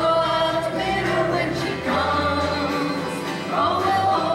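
Group of voices singing together over an acoustic string band of guitars, banjo, mandolin and dulcimer.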